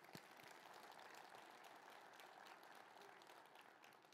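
Faint audience applause, a dense even patter of many hands clapping.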